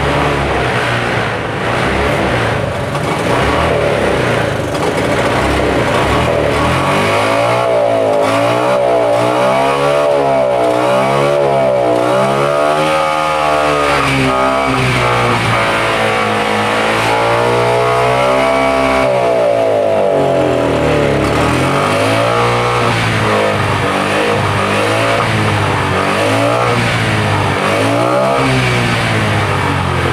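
Honda Scoopy scooter's single-cylinder four-stroke engine running, steady at first, then revved up and down repeatedly for about fifteen seconds before easing back to smaller blips. The engine is being revved while carburettor cleaner is sprayed into its intake to clear deposits from a sluggish, unresponsive engine.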